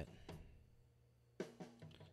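Mostly near silence with a faint low hum, then a faint drum hit with a short low ring about one and a half seconds in and a softer one just before the end, from a recorded drum kit playing back.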